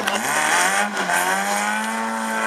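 Banger racing car's engine revving: the note climbs, dips briefly near the middle, then climbs again and holds high and steady.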